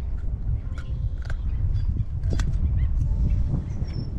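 Wind buffeting the camera microphone as a steady low rumble, with a few sharp clicks and faint short chirps scattered through it.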